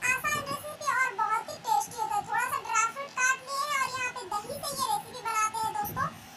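A child singing in a high voice, phrase after phrase with short breaks.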